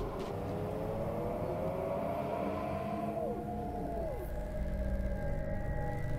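Eerie ambient sound-design drone: a steady low rumble under wailing tones that rise slowly, then slide down in pitch about three and four seconds in.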